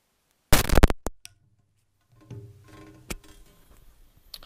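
A microphone plug going into the GoPro's mic adapter jack: a loud burst of crackle and a couple of clicks as it makes contact. Once the Rode lavalier is connected, a low, steady electrical hum comes up with faint handling rustle and a sharp click.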